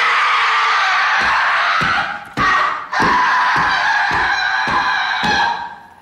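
A woman wailing loudly in long, shrill cries: one long wail, a short one, then another long one.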